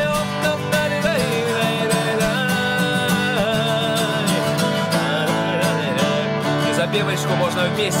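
A man singing while strumming an acoustic guitar in a quick, steady rhythm.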